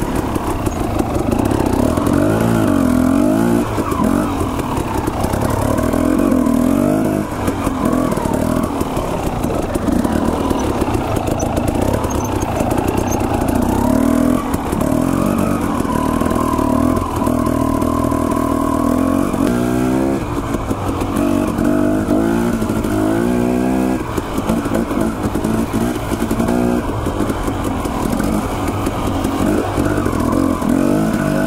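Dirt bike engine running on a trail ride, its revs rising and falling with the throttle. It gives several quick blips up in pitch about two-thirds of the way through.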